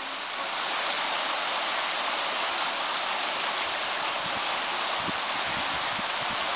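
River rapids rushing steadily: white water churning over rocks. The sound grows slightly louder about half a second in, then holds even.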